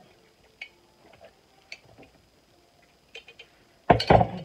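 Quiet sipping through a straw from a glass jar, with a few faint scattered clicks. Near the end comes a sharp knock as the glass jar is set down.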